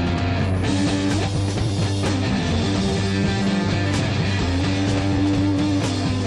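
Three-piece rock band playing live: electric guitar holding drawn-out notes over a steady bass guitar line, with drum and cymbal strokes.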